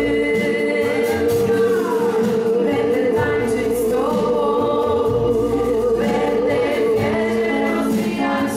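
Live worship band playing a Polish worship song with several voices singing; one sung note is held steadily through most of it.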